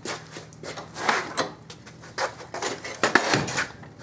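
Metal clunks, knocks and scrapes of a throttle body being set into a small bench vise and clamped, with the sharpest knocks about a second in and about three seconds in.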